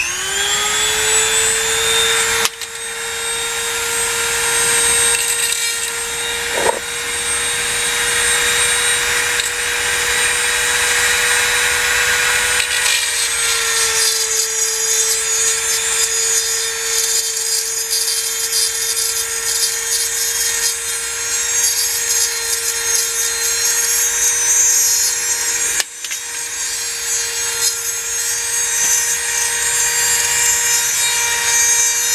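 Dremel rotary tool with a diamond bit spinning up and grinding into a broken bolt: a steady high whine with gritty scraping over it. Its pitch dips slightly about halfway through, and the sound briefly drops near the end.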